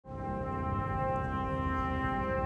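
Brass instruments sounding a sustained chord, several notes held steadily, starting abruptly at the very beginning.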